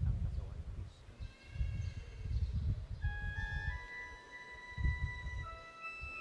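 A keyboard instrument playing sustained, organ-like notes of a slow hymn melody, coming in about a second in. Uneven low rumbling sounds underneath.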